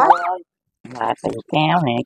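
Speech only: a woman talking in Vietnamese, with a short pause in the middle.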